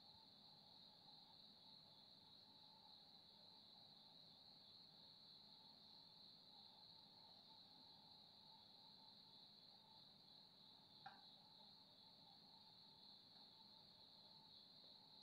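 Near silence, with a faint, steady high-pitched chorus of crickets and one soft click about eleven seconds in.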